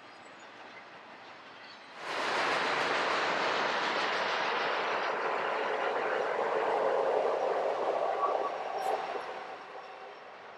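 Double-stack freight train rolling past close by: a steady rush of steel wheels on rail that comes in suddenly about two seconds in and fades near the end, with only faint train noise before it.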